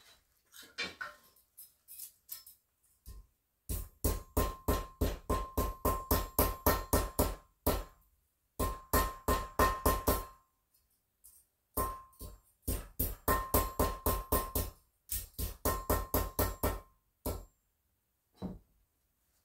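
Perforated steel plumber's tape being hammered flat: runs of quick metal strikes, about five a second, with a ringing tone, in several bursts with short pauses between.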